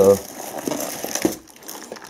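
Plastic shrink-wrap crinkling and crackling as a shrink-wrapped stack of firecracker packs is grabbed and lifted out of a cardboard box, dying down about a second and a half in.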